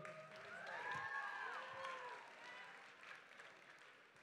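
Audience applauding, with a few voices calling out over it; the clapping swells about a second in and then dies away.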